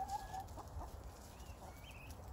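Guineafowl giving a few faint, short calls near the start, then a brief high chirp near the end, as they forage.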